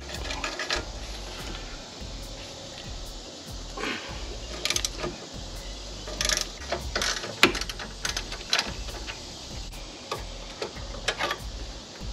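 Hand ratchet wrench clicking in short runs while the nut on the sway bar drop link and lower strut is worked loose, with a few metal clinks of the tool between the runs.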